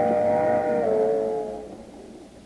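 Radio sound-effect train whistle: a chord of several steady tones held, shifting slightly down in pitch about a second in, then fading out near the end.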